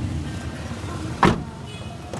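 A car door being shut, one sharp thump a little after a second in, over background music.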